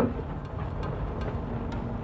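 Cabin noise of a SsangYong Rexton diesel SUV creeping down an off-road slope with hill descent control just switched on: a steady low rumble of engine and tyres, with a faint steady hum joining near the end.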